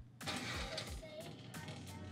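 Faint background music over a steady low hum, with broad handling and scuffing noise from about a quarter second in.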